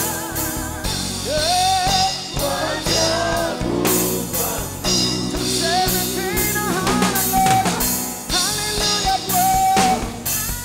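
Live gospel worship music: voices singing a wavering melody over a band with a drum kit keeping a steady beat and a sustained bass line.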